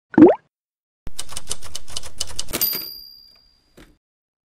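Title-animation sound effects: a short rising pop, then typewriter keys clacking rapidly for about a second and a half, ending in a high ringing ding that fades out.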